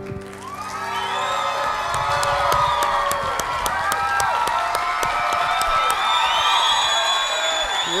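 Studio audience cheering, whooping and applauding at the end of a song. It swells up about half a second in, with many high whoops over steady clapping. The last strummed acoustic-guitar chord fades out at the start.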